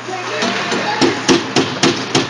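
Hockey sticks knocking against the bench boards in a quick, even run of sharp knocks, about four a second, starting about halfway in.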